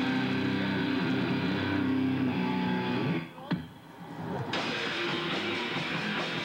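Heavy metal band playing live: distorted electric guitars, bass and drums. A little after three seconds in the music drops away, with a short click, and about a second later guitar playing picks up again.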